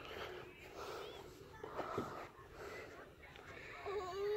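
Faint breathy vocal sounds from a toddler and other voices, with one soft thump about halfway through.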